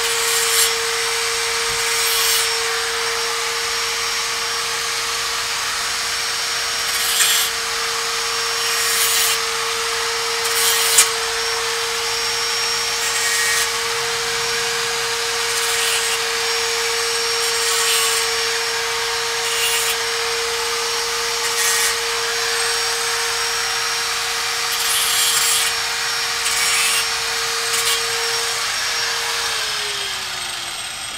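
Handheld electric angle grinder running steadily with a constant whine, its disc cutting into metal with a louder hissing pass every second or two, while a replacement air-conditioner fan motor is fitted. Near the end it is switched off and winds down with a falling pitch.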